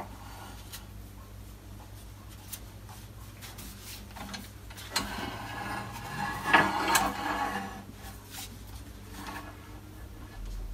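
Metal tool-rest banjo and tool rest being handled and slid into position on a lathe outrigger arm: light knocks and clicks, with a louder scraping slide and a couple of knocks from about five to seven and a half seconds in. A faint steady hum runs underneath.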